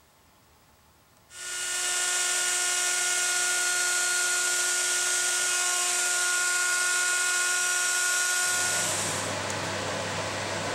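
Table-mounted router starting up about a second in and running at a steady high whine while an MDF template is fed against its bearing-guided bit. Near the end the whine gives way to a lower hum.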